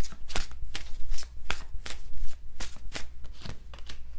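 A deck of tarot cards being shuffled by hand: quick, irregular slaps of cards against each other, about three or four a second, thinning out near the end.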